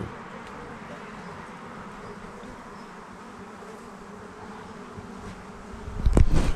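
Honeybees buzzing around the bee yard: a steady, even drone with no break.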